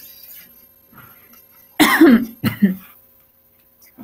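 A person coughing twice in quick succession about two seconds in, amid otherwise quiet call audio.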